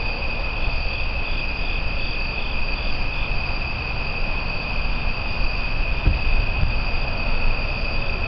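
Night insect chorus: a steady, high continuous trill, joined for a couple of seconds near the start by a second insect calling in short pulses about three times a second. A low steady rumble runs underneath.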